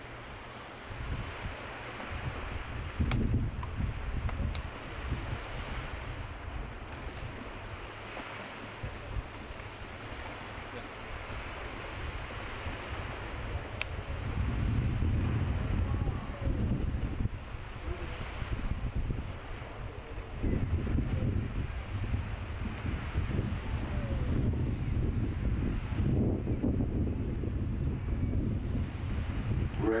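Wind buffeting the microphone in gusts, with low rumbling surges, over a steady wash of choppy sea.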